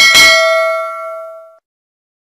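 A notification-bell sound effect: one bright ding that rings with several steady tones, fades and stops about a second and a half in.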